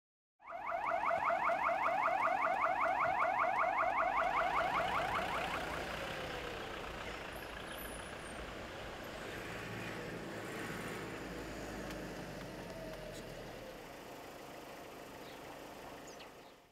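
Electronic siren warbling rapidly, many cycles a second, for about five seconds, then fading out with a falling tone. Steady outdoor background noise follows.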